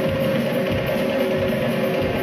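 Live percussion ensemble playing a fast, dense groove: hand-struck djembes over a drum kit.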